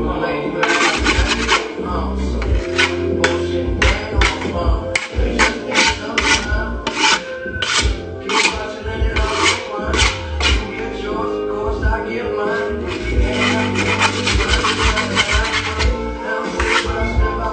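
Repeated rasping strokes of a hand tool along the edge of a wooden skateboard deck, about two to three strokes a second, with a pause about two-thirds of the way through. Music plays underneath.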